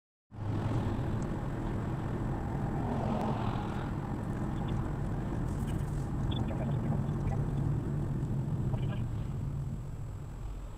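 Steady low rumble of engine and tyre noise inside a moving car's cabin, starting suddenly just after the start.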